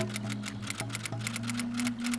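Background music: rapid, uneven ticking clicks over held low notes.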